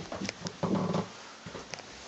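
A dog giving one short, low whine a little over half a second in, with a few faint clicks around it.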